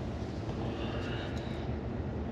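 Steady low rumble of background noise inside an electric car's cabin, with no engine note.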